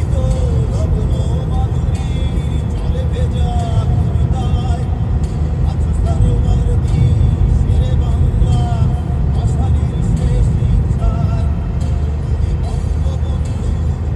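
Steady low rumble of car road and engine noise heard inside the moving car's cabin, with music playing faintly over it.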